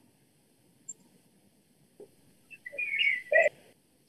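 A short, high whistling sound with a wavering pitch, lasting under a second, about three seconds in, in an otherwise quiet pause.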